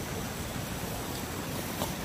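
A river running over rocky shallows, a steady rushing of water.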